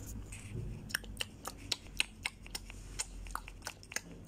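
Small sharp clicks and taps, uneven and about four a second, starting about a second in: a toy unicorn being made to 'eat' from a small clear plastic cup.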